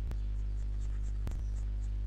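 Steady low electrical hum in the recording, with two faint clicks, one just after the start and one about a second in.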